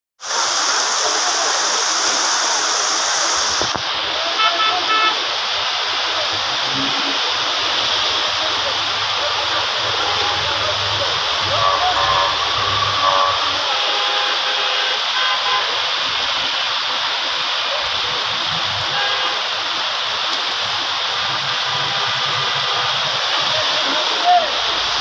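Heavy rain falling steadily, a dense even hiss of a downpour on a street, with a few short vehicle horn toots about four seconds in and again around twelve seconds.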